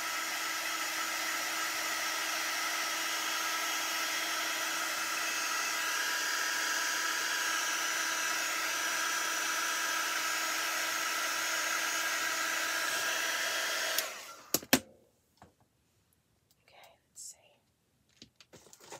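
Handheld craft heat gun blowing steadily with a constant motor hum, drying paint on a wooden egg. It is switched off about 14 seconds in, followed by a couple of sharp clacks as it is set down.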